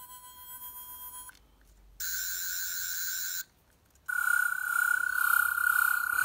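Twelfth Doctor sonic screwdriver toy playing its electronic sonic sound effect in three goes. A fainter steady high tone stops just over a second in. A louder warbling tone runs from about two seconds in to about three and a half. Another starts about four seconds in and keeps going.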